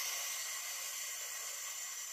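A woman's long, steady hissing exhale through the mouth, a paced breath-out during an exercise, lasting about three seconds and fading out just after the end.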